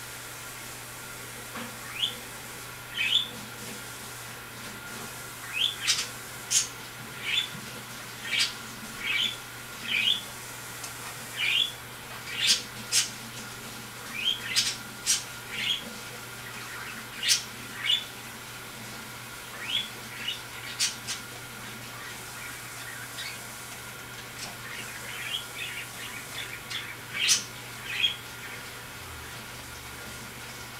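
A bird chirping over and over, short sharp chirps about a second apart and sometimes in quick runs, over a steady low hum.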